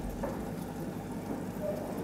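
Steady splashing and trickling of running water in a home aquarium, the sound of water circulating through the tank.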